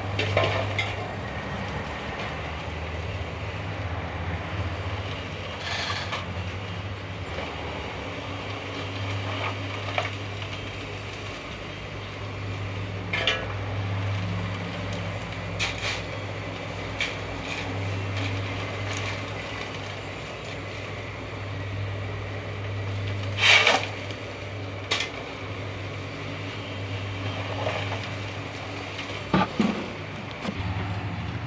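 Small drum concrete mixer running with a steady hum, with sharp metal clanks every few seconds from a shovel, the loudest about two-thirds of the way through.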